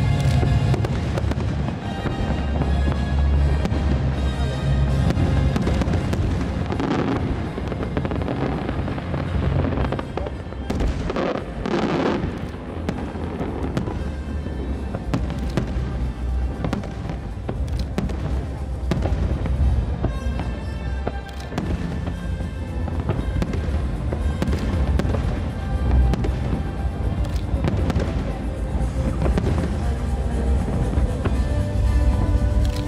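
Aerial firework shells bursting in many sharp bangs over sustained music, with a thick cluster of bursts about midway.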